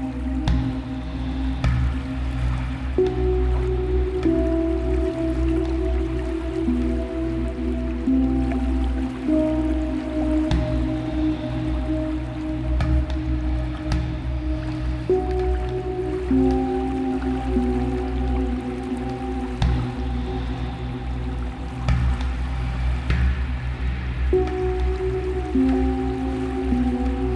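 Dark ambient meditation music: a deep, steady bass drone under slow sustained notes that shift pitch every few seconds, with scattered short clicks.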